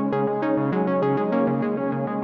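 Behringer System 55 modular synthesizer playing a fast sequenced pattern of short, pitched notes with sharp attacks, about six or seven a second, over layered sustained tones.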